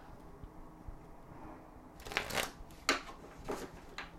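A tarot deck being shuffled by hand. It is quiet at first, then about two seconds in come three short bursts of cards rustling against each other.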